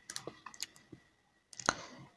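A few faint, short taps on a touchscreen device used to work an on-screen pen and annotation tool. They come scattered, with the loudest near the end.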